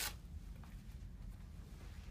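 Faint handling of a zipper and the nylon Cordura fabric of motorcycle pants as the zip-off vent panel is opened, over a low steady room hum.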